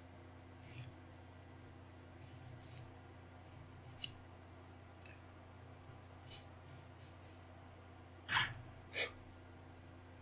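Short, dry scraping strokes on a small styrene model-kit part, in several clusters, with a sharper tap about eight seconds in. A steady low electrical hum runs underneath.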